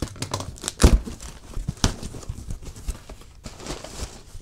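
A cardboard box being opened by hand: flaps and plastic packing rustling, crinkling and tearing, with a sharp thump just under a second in and another near two seconds.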